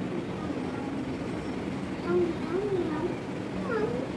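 A few short wavering voice-like calls over a steady background hum, the last rising near the end.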